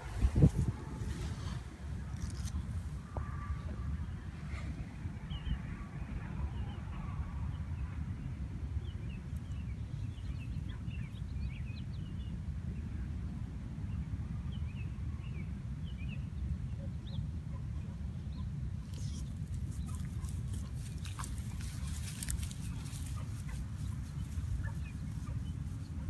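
Outdoor park ambience: a steady low wind rumble on the microphone, with many faint, short bird chirps scattered through the middle part. Near the end come a few light clicks and rustles.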